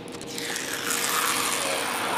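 Double-blade cutter drawn across the paper backing of a sheet of vinyl wrap film, scoring only the release paper and not the vinyl: a steady hiss of blade on paper that builds over the first second.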